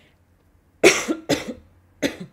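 A woman coughing twice in quick succession, about a second in, from a cold she says she is catching.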